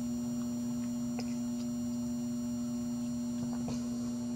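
Variable-frequency PWM circuit humming with a steady, even tone and a faint high whine above it: the sign of power being switched through it after it was turned up slightly. Two faint clicks, about a second in and near the end.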